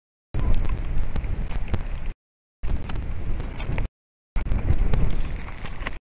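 Wind rumbling on an outdoor camera microphone, with rustling and sharp little knocks of branches as a climber moves around the eagle nest. The sound cuts out to complete silence for about half a second several times, gaps in the stream's audio.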